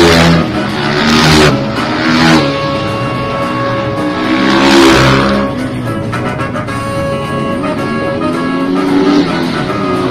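Music playing together with motorcycle engines revving and passing in several loud swells: at the start, about one and two seconds in, and again near five seconds in.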